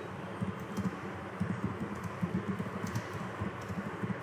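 Typing on a computer keyboard: a run of irregular key clicks over a steady low background hum.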